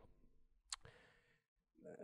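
Near silence, broken about a third of the way in by a single faint click from a handheld presentation remote's button as it advances the slide.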